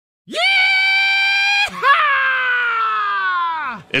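A person screaming: one loud held scream on a steady pitch, then after a brief break a second yell that slides slowly down in pitch and dies away.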